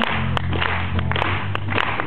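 Sharp, close hand claps, several a second and irregular, over a sustained low note from the band and a steady wash of crowd noise.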